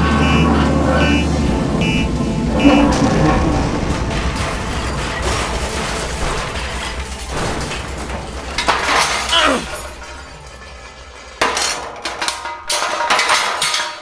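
Sound effects of a spacecraft crash-landing: a pulsing warning alarm beeps for the first few seconds over a low rumble and a dense crashing roar that slowly dies away, then a burst of breaking, clattering impacts near the end.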